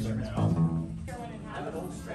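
Acoustic bass guitar being plucked: a fresh low note about half a second in, which then rings and fades away.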